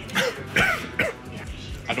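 A man's short vocal sounds, three brief bursts about half a second apart, made with his hand at his mouth, over background music.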